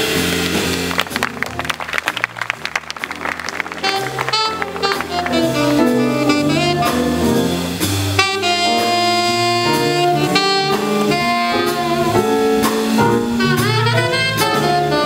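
Live jazz combo of saxophone, electric keyboard, electric bass and drum kit. Busy drumming fills the first few seconds, then a saxophone melody carries on over the band.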